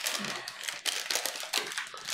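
Paper rustling and crinkling as banknotes and the paper around them are handled, with irregular small crackles.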